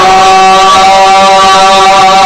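Male voices holding one long, steady sung note in an unaccompanied naat, a devotional chant, with no break in the pitch.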